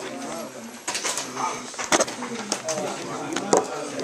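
Students' voices chattering over one another as a class moves to group tables, with a few sharp knocks and bumps.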